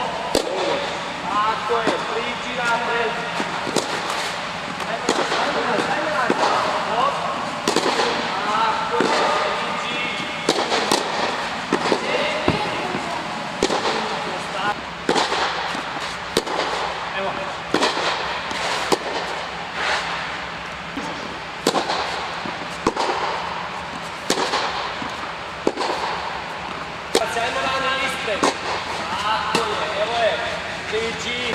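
Tennis balls struck by rackets, sharp pops coming roughly once a second at an uneven pace, with the ball bouncing on the court. Voices call and talk in the background.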